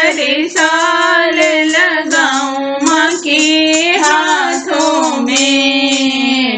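A woman singing a devotional folk song (devi geet) to the goddess, holding long notes joined by sliding ornaments.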